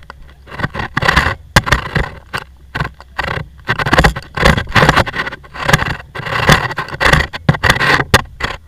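Irregular bursts of scraping and rustling as people shift about in the seats of a parked microlight trike, with no engine running.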